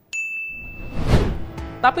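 Edited sound effects: a bright single 'ding' chime that rings steadily for under a second, then a whoosh that swells and fades about a second in. Soft background music comes in near the end.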